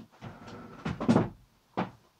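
Handling noises of a person getting up from a desk and moving close to the microphone: a few short knocks and thumps over faint rustling, the loudest about a second in.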